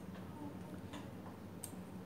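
A few light, irregular clicks over a steady low hum in a quiet room.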